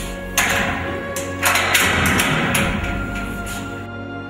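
Background music over the clank and scrape of a heavy padlock being unlocked and a metal door opened: a rough scraping noise starts about half a second in, grows louder in the middle and fades out near the end.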